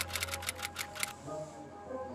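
Typing sound effect: rapid key clicks that stop a little over a second in, over a low held bass note and soft music.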